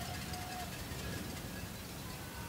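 Wind buffeting an outdoor microphone, a steady low rumble under faint open-air stadium ambience.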